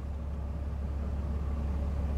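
Truck engine idling, heard from inside the cab: a steady low rumble that grows slightly louder.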